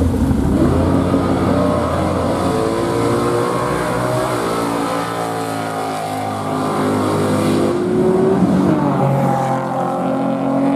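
Classic Ford Mustang fastback drag car launching and accelerating hard down the strip. Its engine note climbs in pitch and drops back at each upshift as the car pulls away past the camera.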